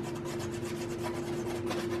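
A pastel stick scratching and rubbing across the surface of a pastel painting in rapid, repeated short strokes as lighter grass marks are laid in.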